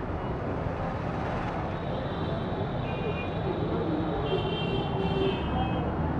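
Steady outdoor background noise of road traffic rumble, with faint distant voices now and then.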